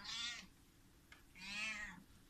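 Young kitten meowing twice, two short high-pitched calls, the second starting about one and a half seconds in and slightly longer.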